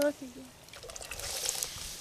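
Canned beans and their liquid pouring out of a tin can into a cast iron Dutch oven, a wet pouring sound that grows louder over the second half.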